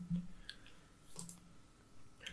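Faint mouth clicks and short, quiet low murmurs from a man's voice in a pause between spoken sentences.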